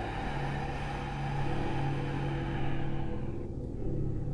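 Ambient meditation background music: a low sustained drone, with a higher held tone joining about one and a half seconds in. Over it lies a soft airy hiss that fades out a little after three seconds.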